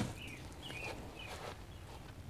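Quiet outdoor air with a few faint, short bird chirps in the first second and a half.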